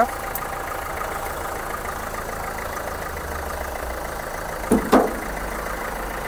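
Renault Duster's diesel engine idling steadily.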